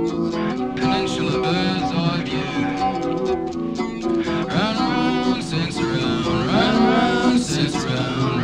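Rock band music between vocal lines, led by guitar, with sliding, swooping pitches about halfway through and again near the end.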